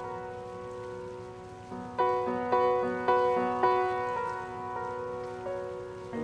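Ninety-year-old upright piano, in a rough state, playing slowly: a held chord dies away, then single notes are struck about twice a second from two seconds in before settling into another sustained chord, over a faint hiss.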